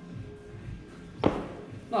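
Background music with a steady beat, and one sharp thump a little over a second in: a person getting up from kneeling on a rubber gym floor.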